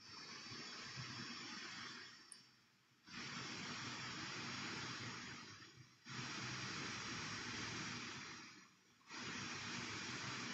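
Faint steady hiss of background noise picked up by the microphone, cutting out briefly three times, about every three seconds.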